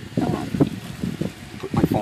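A person's voice speaking in short bursts, words indistinct.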